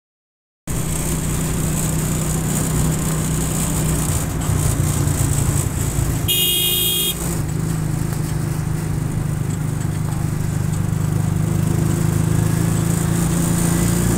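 A small engine, most likely the motorcycle carrying the camera, running steadily on the move with wind and road noise. About six seconds in, a vehicle horn sounds for about a second.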